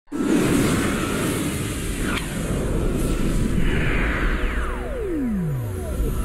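Channel logo ident sting: a dense rumble with whooshing swells, capped near the end by a long falling swoosh that sweeps from high to low.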